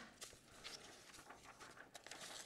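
Near silence: quiet room tone with faint, irregular small clicks and rustles.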